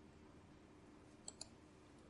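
Near silence: room tone, with two faint, short clicks in quick succession a little over a second in.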